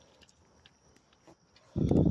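Faint rustling, then a short, muffled, low thump near the end.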